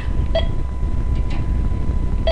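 A steady low rumble with a faint, thin steady tone above it, and two very brief faint blips.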